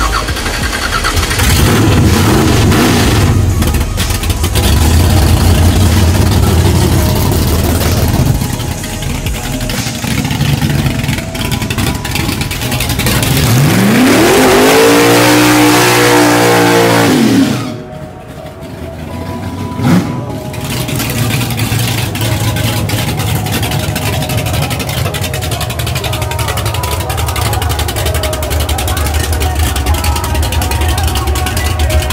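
A 1969 Chevrolet Chevelle's engine is revved hard through a burnout, with the tyres spinning and a roar of tyre noise. Its pitch climbs in one long rev around the middle and falls before it cuts off sharply. A short rev up and down follows about two seconds later.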